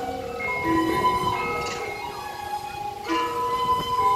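Balinese gamelan music for the peacock dance: metallophone notes ringing in sustained, overlapping tones, with fresh strikes just under a second in and again at about three seconds.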